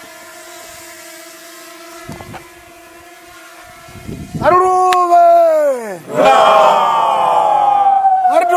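A group of voices giving a loud, drawn-out call that rises briefly then slides down in pitch about halfway through, then calls again, fuller and held longer, near the end. Before the calls, a faint steady hum.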